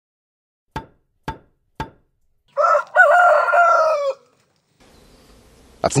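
Three sharp knocks about half a second apart, then a rooster crowing once, a single drawn-out call of under two seconds.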